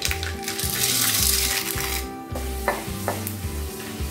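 Chana dal dropped into hot oil with spluttered mustard seeds in a non-stick kadai, sizzling as it fries and is stirred with a wooden spatula. The sizzle is loudest in the first two seconds and drops briefly just after two seconds, and there are a couple of light knocks later on.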